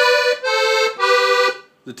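Delicia piano accordion played on its three-reed musette register: three held notes stepping down in pitch, each about half a second, then it stops.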